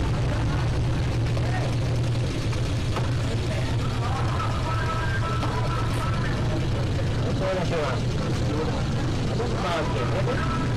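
Outdoor street background: a steady low rumble throughout, with faint voices of people in the background.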